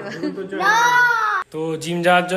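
A young child's high-pitched wailing cry, about a second long, rising and then falling in pitch and cut off abruptly, followed by a man's voice.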